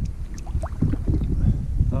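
Wind rumbling on an open microphone out on the water, a steady low buffeting.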